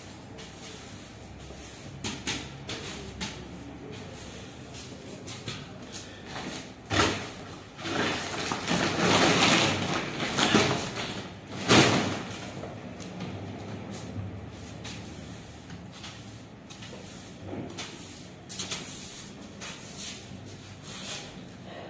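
Broom sweeping a tiled floor, with a few light knocks. In the middle a large woven plastic bag rustles loudly and knocks as it is picked up and moved, with sharp peaks at the start and end of that stretch.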